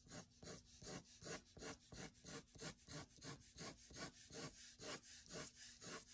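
Light sketching pencil drawing short curved strokes on paper, about three strokes a second, the pencil lifted between each one; faint.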